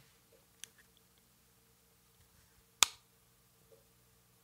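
Wegovy injection pen being used for a self-injection: one sharp click a little under three seconds in, with a faint tick about half a second in.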